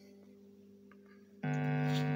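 Faint steady amplifier hum, then about one and a half seconds in a distorted electric guitar is struck and rings on.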